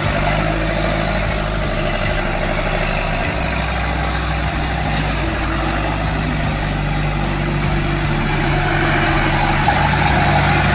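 A small paddy tractor's engine running steadily as it drives through mud and water.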